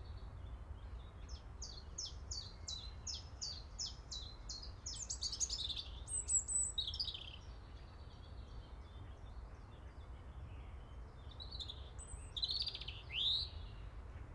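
Birds singing: a run of about ten short falling high notes, then more chirps around the middle and again near the end, over a faint steady low rumble.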